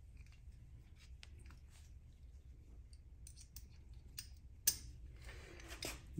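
Small metal gun parts being handled and fitted together as a Smith & Wesson Response carbine's bolt and buffer assembly is reassembled. There are faint scattered clicks, with one sharper click about three-quarters of the way through.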